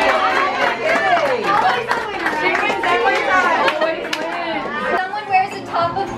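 Many people talking at once: overlapping chatter of a group of guests, with no single voice standing out.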